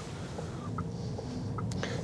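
Steady low road and tyre rumble inside the cabin of a Volkswagen ID.3 electric car driving slowly, with a few faint ticks.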